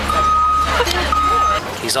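Reversing beeper of a vehicle backing up: a steady high-pitched beep that stops under a second in and sounds again briefly, over a low engine rumble that cuts off near the end.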